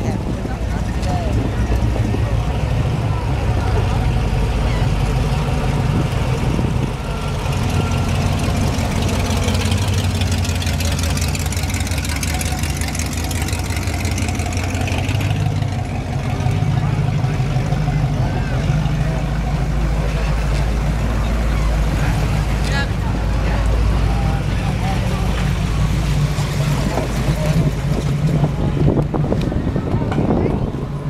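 Low, steady engine rumble of classic cars driving past at walking pace, the engine note changing about halfway through as the next car comes alongside, with people talking in the background.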